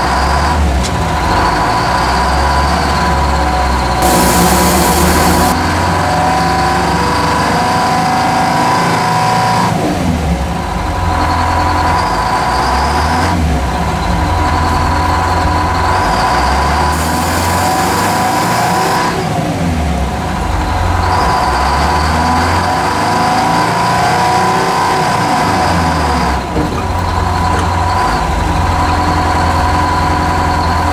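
Terex wheel loader's diesel engine working under load, heard from inside the cab as the machine crushes scrap cars, with a steady high whine that drops out briefly a few times. Two short bursts of hiss come about four seconds in and again about seventeen seconds in.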